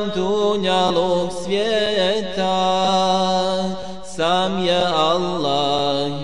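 Wordless passage of an ilahija, a Bosnian Islamic devotional song: voices hold a low steady drone while a higher voice glides between notes. The level dips briefly about four seconds in.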